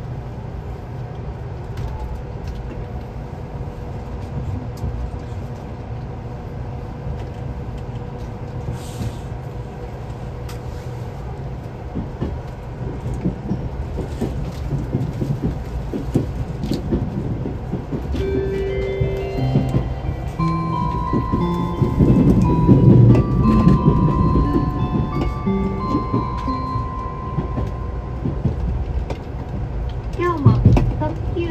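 A JR Central 383-series electric express train pulls away and gathers speed, heard from inside its front car: a steady low rumble and hum that grows louder about a third of the way in. Past the middle, a run of stepped electronic tones comes in, several held notes jumping up and about in pitch, for several seconds.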